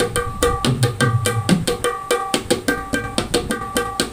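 Dholak, a two-headed barrel drum with metal tension rods, played by hand in a fast, steady theka rhythm. Ringing high-pitched strokes come several times a second, with deep bass strokes between them.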